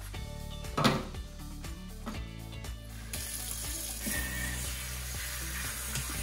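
Kitchen faucet turned on about three seconds in, water running steadily onto microgreens in a stainless steel colander as they are rinsed, over background music. A single short knock about a second in.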